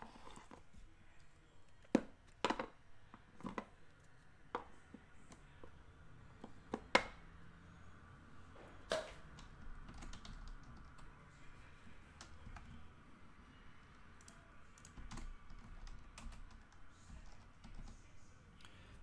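Quiet, sparse light clicks and taps, about six distinct ones in the first nine seconds and fainter scattered ticks after that.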